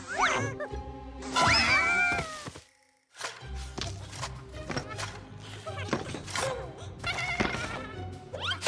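Animated cartoon soundtrack: music with comic sound effects, including a cluster of sliding squeals near two seconds in. It drops to silence for a moment about three seconds in, then the music and effects resume.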